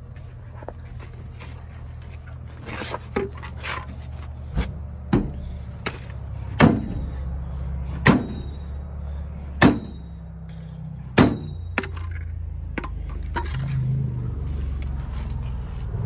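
Homemade big hammer with a steel-strapped hardwood head and a steel handle striking a trailer's spring shackle and hanger, to jar a misaligned bolt hole into line on a tandem axle install. It lands a series of heavy blows. The four loudest come about a second and a half apart, and the later ones leave a short metallic ring.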